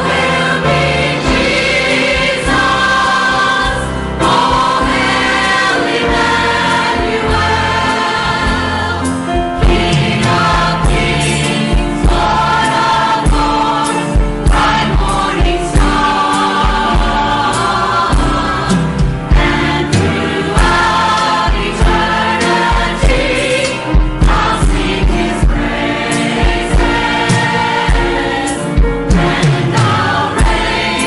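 Church choir of mixed men's and women's voices singing with accompaniment, a steady low beat coming in under the voices about halfway through.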